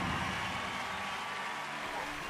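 The fading tail of a loud hit on the video's edited soundtrack, dying away slowly with a few faint steady high tones left ringing under it.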